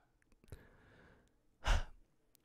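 A man's short breath or sigh into a close podcast microphone near the end of a pause in talk, after a faint softer breath about half a second in.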